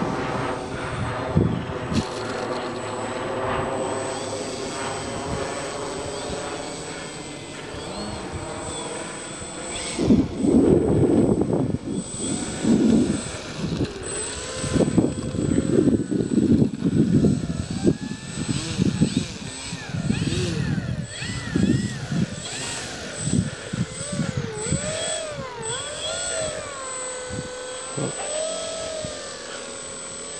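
Brushless electric motor and propeller of a Dynam Beaver RC plane on the ground, a whine that slowly drops in pitch over the first several seconds. Later, low uneven rumbles of wind and handling on the microphone, and a whine that wavers up and down.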